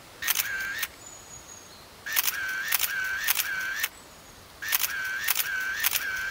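Camera shutter firing in three bursts of repeated shots, about two seconds apart.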